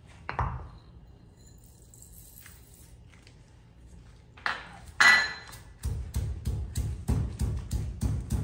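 Stone pestle pounding whole spices in a stone mortar: a quick run of dull knocks, about three to four a second, starting about six seconds in. Just before it comes a sharp ringing clink, the loudest sound.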